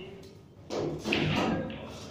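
A sudden thump about two-thirds of a second in, followed by about a second of indistinct voices.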